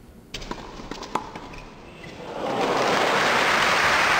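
A few sharp clicks over a low hiss. About two seconds in, a loud rushing whoosh swells up and holds: the sound effect of an animated logo outro.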